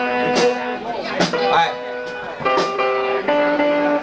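Guitar strummed through the stage amplification, several chords struck one after another and left to ring, as a loose sound check rather than a song.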